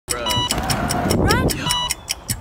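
Rumbling noise inside a car, with voices and a fast, even ticking of about five ticks a second.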